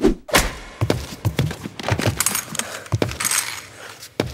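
Playback of a mixed action fight-scene soundtrack: a dense run of thuds and impacts with footstep foley and scuffs, starting abruptly.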